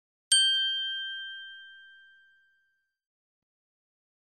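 A single bright bell-like chime struck once, ringing out and fading away over about two seconds. It marks the end of the listening exercise.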